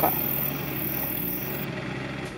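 MAN G90 8.150 four-wheel-drive truck's diesel engine running steadily at low speed as the truck drives along a gravel track. A high hiss cuts off suddenly near the end.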